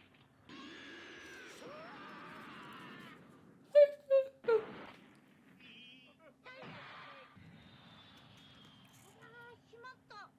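Quiet voices and sound from an animated show, with three short, loud, high voice sounds close together a little under four seconds in.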